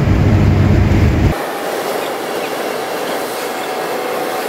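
Heavily loaded Scania truck's diesel engine droning low and steady inside the cab at cruising revs. About a second in, the sound cuts abruptly to a thinner hiss of road and wind noise with a faint steady whine.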